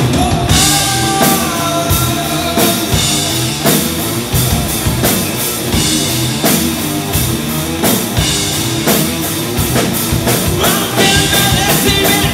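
Rock band playing live at full volume: drum kit keeping a steady driving beat under distorted electric guitars.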